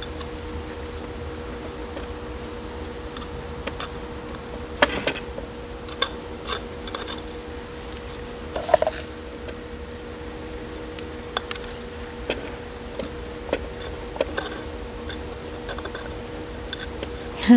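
A metal spoon scraping and clinking against the pot rim and gritty potting mix, in irregular small ticks and scrapes, as soil is packed in around a succulent being repotted. A steady faint hum runs underneath.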